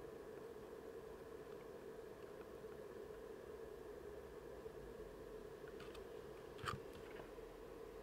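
Faint steady hum, with two soft ticks near the end as a wire is soldered onto a circuit board pad.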